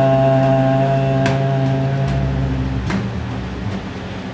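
A sustained chord played by the band during an instrumental break in a live gospel song, held steady and then dropping away about three seconds in, with a couple of faint clicks.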